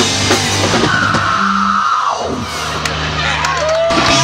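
Heavy rock band playing live: electric guitar and bass with drums, and a high held note that slides down about halfway through.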